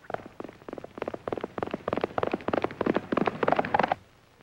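Galloping hoofbeats: a fast run of hoof strikes that grows louder toward the end and cuts off suddenly.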